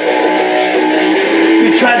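Semi-hollow-body electric guitar strumming chords in a steady rhythm. A man's singing voice comes back in near the end.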